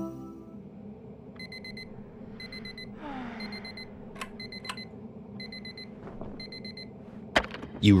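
Digital alarm clock beeping: clusters of quick, high electronic beeps repeating about once a second. A falling whoosh comes about three seconds in, two sharp clicks follow, and a thump comes near the end.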